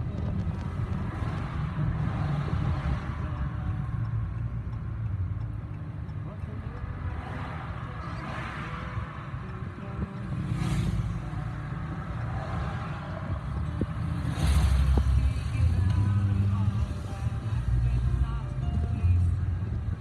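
A moving car heard from inside the cabin: a steady low road and engine rumble at driving speed, getting louder about two-thirds of the way through.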